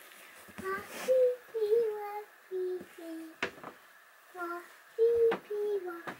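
A young child singing a wordless tune in short held notes that step up and down, with a couple of sharp knocks in between.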